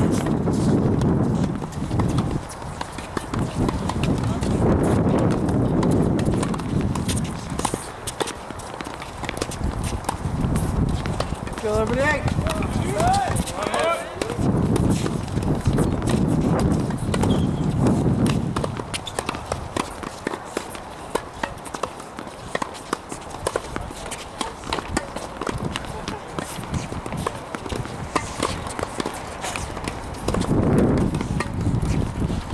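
Tennis balls being struck by rackets and bouncing on a hard court, heard as scattered sharp knocks, with people talking in the background.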